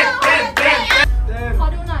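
Group of people clapping in rhythm and chanting over music, the clapping stopping about a second in.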